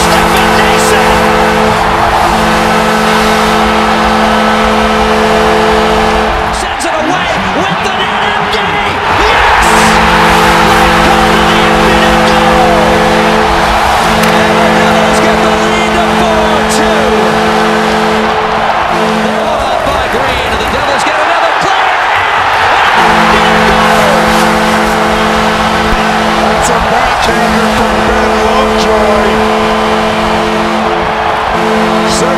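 An ice-hockey arena goal horn sounding in long, steady blasts over a loudly cheering crowd. The horn drops out twice for a few seconds, leaving only the crowd, then starts again.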